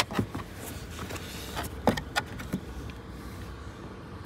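A handful of short, sharp plastic clicks and knocks from hard interior trim of a Land Rover Defender 110's rear cabin being handled, over a faint steady low hum.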